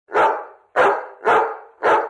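A dog barking four times in quick succession, about half a second apart.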